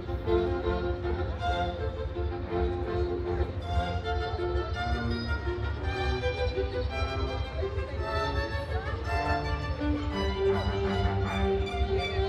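A string ensemble of violins with a cello playing a piece live through loudspeakers. Long held notes begin near the end.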